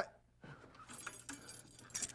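Faint jingling and rustling as a person shifts his body.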